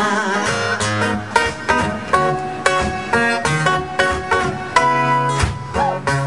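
Acoustic guitar played live: a run of picked notes and chords, each with a sharp attack, a few a second.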